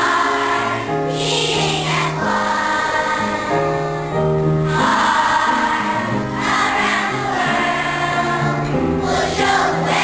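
A large children's choir singing together, the notes held about half a second to a second each.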